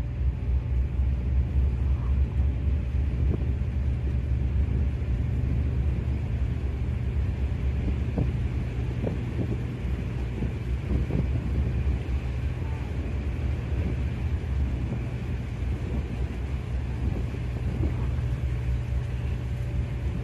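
The Garinko-go III icebreaker's engine and drive droning in a steady low rumble as the boat pushes slowly through drift ice, with scattered cracks and knocks from the ice floes breaking against the hull, most of them a third to halfway through.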